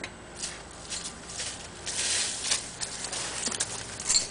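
Irregular footstep scuffs and ticks on a concrete driveway strewn with dry leaves, with a short rush of hiss about two seconds in.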